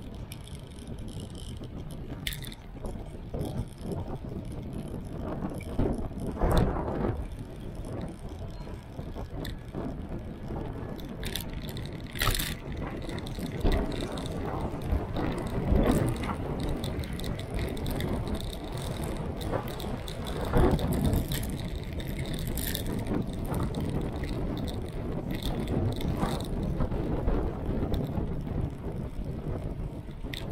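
A bicycle ridden at speed through city streets: a steady rumble of road and rushing air on the microphone, broken by frequent rattles and knocks as the bike goes over bumps.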